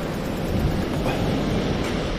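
Steady wind noise on the microphone over surf breaking on the rocks below.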